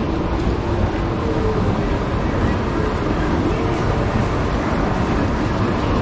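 Shopping-centre atrium ambience: a steady noisy rumble with faint, indistinct voices in it.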